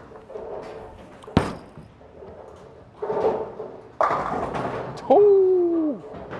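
A bowling ball set down onto the lane with a sharp knock about a second and a half in, rolling down the wood, then crashing into the pins about four seconds in. A loud, slightly falling tone follows near the end.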